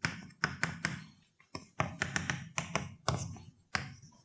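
Chalk writing on a blackboard: a quick, irregular run of sharp taps and short strokes as symbols are written.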